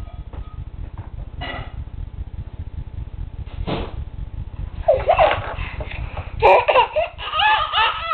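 Baby laughing and squealing in short high-pitched bursts, starting about five seconds in and growing louder.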